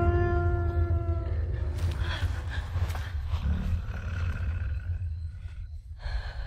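A beast's low growling roar over a deep rumble, the werewolf of the film. A held musical chord dies away in the first second, and the sound fades gradually toward the end.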